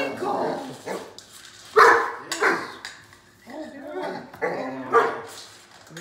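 Great Dane barking and whining with excitement while waiting for its food. There is a rising whine at the start, short loud barks at about two seconds in and again near five seconds, and wavering whines between them.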